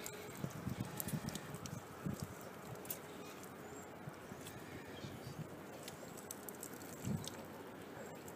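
Faint, scattered clicks and a few soft knocks from a brass backflow preventer being twisted and unscrewed by hand from its fitting.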